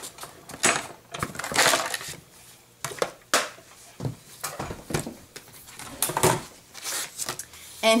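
Plastic embossing plates and an embossing folder clacking and scraping as they are handled and pulled apart after a pass through a die-cut and embossing machine: a run of uneven sharp clicks and short scrapes.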